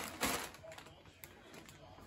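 Plastic bag of frozen french fries crinkling as it is handled, loudest in the first half second with one sharp crackle, then fading to a few faint rustles and ticks.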